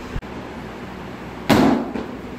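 A single loud thump about one and a half seconds in: a two-handed impact push striking a handheld strike shield, fading quickly. A faint click comes just before it.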